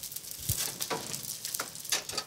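Sardine fillets sizzling skin-side down in a hot frying pan, crisping the skin, with a few light clicks scattered through.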